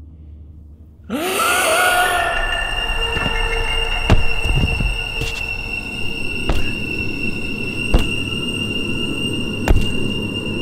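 A sudden horror-film sound-effect stinger about a second in: a rising shriek that settles into a sustained high screeching drone, broken by four heavy thuds.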